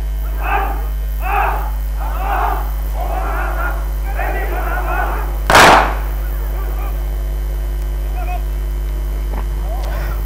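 A drill team of soldiers shouting calls in unison, short and about one a second at first, then longer drawn-out calls. Just past the middle there is a single loud, short blast, the loudest sound in the stretch.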